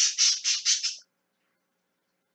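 A bird giving a rapid run of short calls, about six a second, that stops about a second in.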